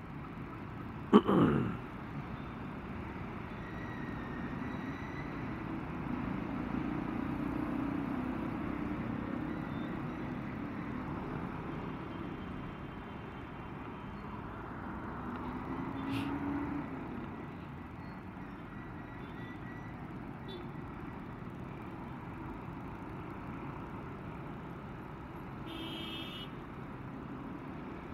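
Steady road noise of a motorcycle riding through slow, dense city traffic: the bike's engine, surrounding cars and buses, and wind on the microphone. A brief sharp sound falling in pitch comes about a second in, and a short beep near the end.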